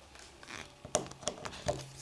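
A few light, sharp clicks from side cutters and a small plastic alarm door contact being handled while the wire ends are trimmed.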